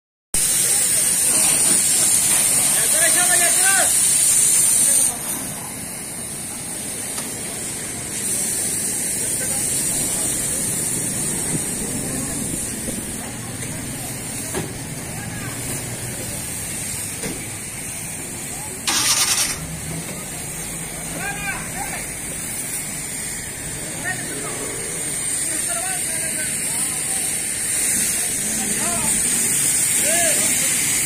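Car-wash ambience: background voices and vehicle noise over a steady high hiss, louder in the first five seconds and again near the end. A brief loud hiss bursts out about two-thirds of the way through.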